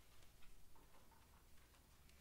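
Near silence in a performance space, with a few faint scattered clicks and ticks from players handling their instruments.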